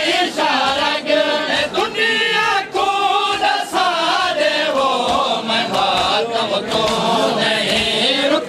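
Male mourners chanting a noha in chorus, with a steady beat of chest-beating (matam) strikes running under the singing.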